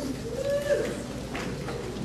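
A short, faint hooting voice from the audience, held and then falling off within the first second, followed by a light knock of footsteps on the stage.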